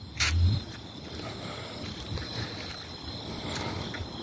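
Quiet night-time outdoor ambience with a faint, steady insect chirr. A short, close noise comes just after the start.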